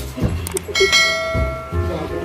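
A bell-chime sound effect strikes about three-quarters of a second in and rings on, slowly fading. Dull low thumps come shortly before and after it.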